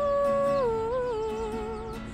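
A woman singing a long held note that drops about half a second in, wavers, and settles on a lower held note, over a strummed acoustic guitar.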